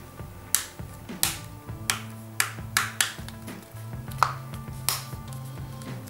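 Plastic back cover of a Samsung Galaxy J1 (2016) being pressed onto the phone by hand, its clips snapping into place in a series of sharp clicks, about eight in all. Soft background music with low held notes plays underneath.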